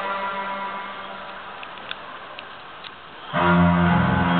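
Live rock band music through a concert PA, recorded from the crowd. A held chord fades away, then just over three seconds in the full band comes back in loudly with guitars.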